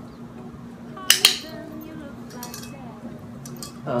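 Handheld plastic training clicker pressed: two sharp clicks in quick succession about a second in. In clicker training this marks the cat's correct response, here the handshake, before a treat is given.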